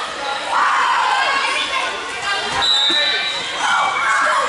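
Crowd and players' voices calling out in a gymnasium between volleyball rallies, with a few thumps of a ball bouncing on the court floor about two and a half to three seconds in.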